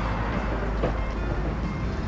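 TV show logo sting: loud music with heavy, steady bass under a rushing, vehicle-like whoosh.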